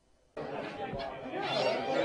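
Near silence, then about a third of a second in, indistinct chatter of many students' voices starts abruptly in a large lecture room, before the class begins.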